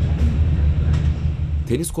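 A steady low rumble. A man's narration starts near the end.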